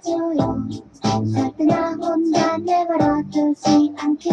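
Music: a high, childlike voice singing a Korean pop song over a light backing.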